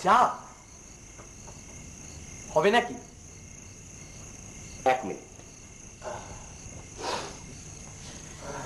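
A steady high-pitched chorus of crickets, with brief spoken exclamations breaking in about every two seconds.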